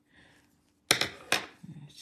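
Two sharp clicks about half a second apart, about a second in, from a drawing tool being handled on the desk.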